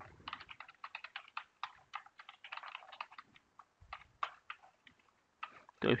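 Typing on a computer keyboard: a quick, uneven run of keystrokes that thins out and stops about five seconds in.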